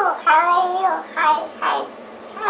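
High-pitched vocalizing in short phrases that rise and fall in pitch, about four of them, each a fraction of a second long.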